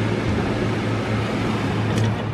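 Steady low hum with an even hiss behind it: indoor background noise.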